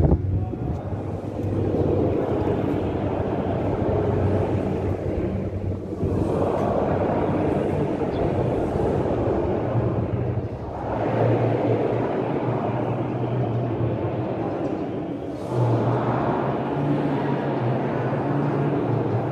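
A congregation singing a hymn together with instrumental accompaniment, heard as a reverberant wash of many voices. It comes in phrases of about four to five seconds, over steady low notes.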